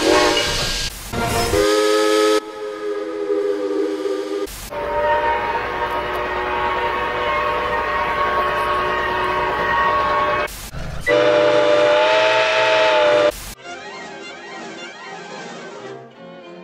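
Grand Trunk Western #6325's steam locomotive whistle, heard as a string of separate blasts from one clip after another: short blasts in the first few seconds, one long steady blast of about six seconds in the middle, then a two-second blast and a fainter, duller one near the end.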